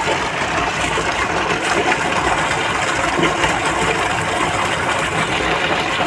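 Filter backwash water gushing steadily out of a large pipe outlet into a basin: the filter is being backwashed.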